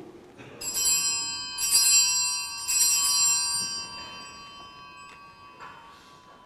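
Altar bells rung three times, about a second apart, at the elevation of the consecrated host. Each ring is a cluster of bright, high tones that fades slowly.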